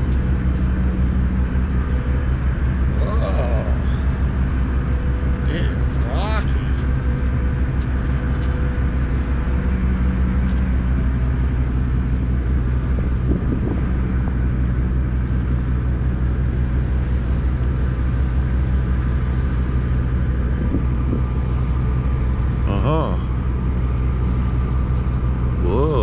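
Car ferry's engine running with a steady low drone, under a constant wash of wind and water noise as the boat moves through choppy water.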